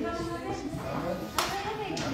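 A man's voice through the hall's microphone and speakers, with one sharp hit, like a hand clap, about one and a half seconds in.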